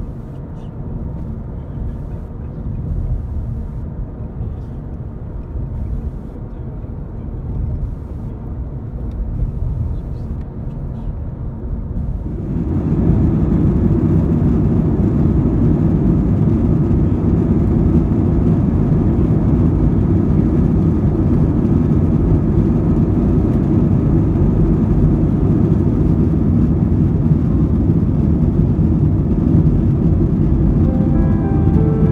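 Low rumble of a moving vehicle heard from inside, then, about twelve seconds in, a sudden jump to the louder steady roar of an airliner's jet engines heard from inside the cabin during takeoff and climb.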